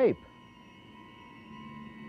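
Sustained drone of steady high tones from a film soundtrack. A deeper tone comes in about one and a half seconds in and slowly grows louder. The end of a man's spoken word is heard at the very start.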